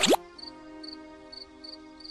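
A quick, loud falling-pitch cartoon sound effect at the very start, over held music notes that then fade. Faint cricket chirps repeat about three times a second.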